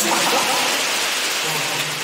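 Audience applauding, a steady even clatter of many hands with faint voices mixed in, easing off slightly near the end.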